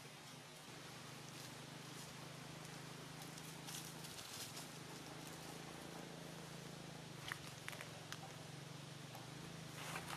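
Faint ambience with a steady low hum, and a few light crackles of dry leaves under a baby macaque's feet as it moves about, mostly a couple of seconds before the end.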